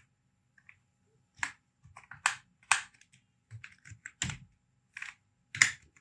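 Computer keyboard typing: a dozen or so separate keystrokes at an irregular pace, with short pauses between them.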